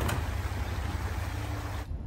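A steady low engine rumble with a hiss over it, cutting off suddenly near the end.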